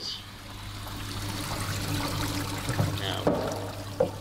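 A thin stream of water trickling into the hydraulic bench's measuring tank at a low, laminar-range flow rate, growing louder over the first second or two, over the steady low hum of the bench's pump.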